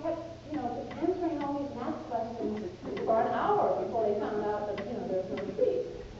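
Speech only: a woman lecturing, her voice continuous.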